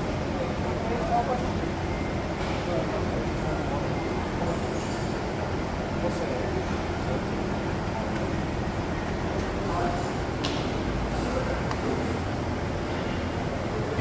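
Faint, indistinct man's voice explaining something, over a steady hum of workshop background noise.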